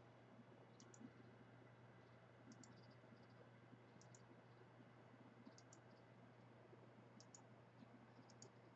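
Faint computer mouse clicks, in quick pairs about five times, over near silence with a faint steady hum.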